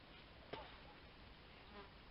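Near silence: faint outdoor background, broken by one brief faint sound about half a second in and a weaker one near the end.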